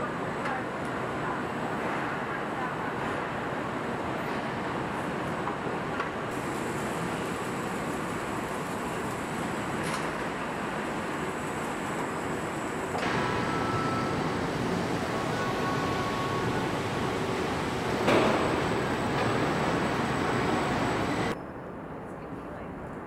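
Steady factory-floor noise of a truck assembly line: a dense hum and hiss of machinery whose character changes abruptly several times, with a sharp knock about 18 seconds in.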